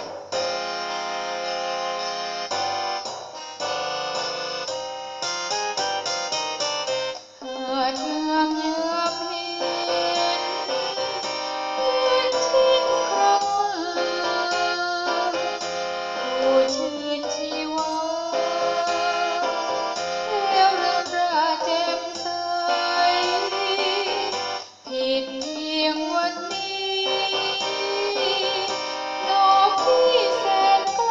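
A Thai song with electronic keyboard accompaniment: an instrumental keyboard passage, then from about seven seconds in a woman sings the melody over it.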